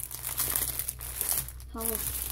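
Plastic packaging on a stack of sticker packs crinkling and crackling as the stack is handled and shuffled in the hands.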